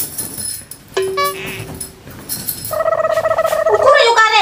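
Edited-in music or comic sound effects: jingling at the start, a steady held tone for about a second, more jingling, then a higher held tone through the last second.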